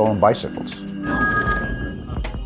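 A telephone ringing: a steady ring made of a few held tones that starts about a second in.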